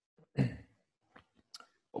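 A person's sigh: one short, voiced exhale about half a second in, followed by a couple of faint clicks.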